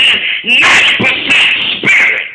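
Loud, distorted shouting from a man's voice through an overloaded church sound system, in three sharp bursts.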